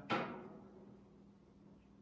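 A pause between spoken sentences: a brief sound that fades out within about half a second at the start, then quiet room tone with a faint steady hum.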